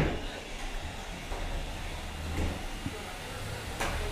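Low steady hum with faint rattles from small 3 lb combat robots driving about the arena, their weapons stopped. A light knock comes near the end.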